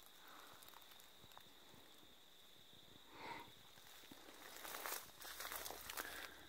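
Near silence, then faint footsteps and leaves rustling from about four and a half seconds in as someone moves through dry grass and low-hanging leafy branches. A brief faint sound comes about three seconds in.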